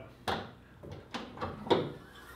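Jeep Wrangler JK hood being unlatched: a series of light clicks and knocks from the latch and catch, the loudest near the end as the hood comes free and starts to lift on its gas struts.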